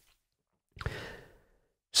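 A man's single short breath, about a second in, close to the microphone, in a pause between sentences.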